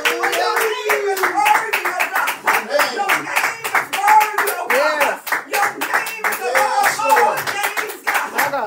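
Hands clapping in a steady, quick rhythm, with a man's voice sounding over the claps.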